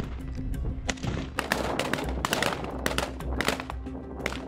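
Assault-rifle fire from AK-pattern rifles: many sharp shots, irregular and some in quick strings, over background music.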